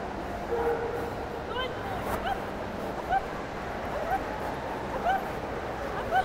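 A dog giving short, high-pitched yips and whines, about one a second, over the steady murmur of a large indoor hall.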